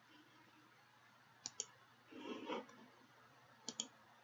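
Computer mouse clicks, quiet and sharp: a quick pair about a second and a half in and another pair near the end, with a fainter, softer sound between them.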